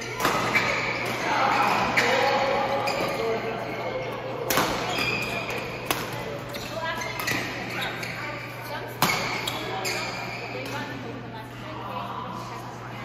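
Badminton rackets striking a shuttlecock during a doubles rally: several sharp cracks a couple of seconds apart, the loudest about nine seconds in, ringing in a large echoing hall. Voices carry throughout.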